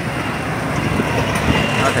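Street traffic noise: motorbike engines and a bus running close by, a steady rumble.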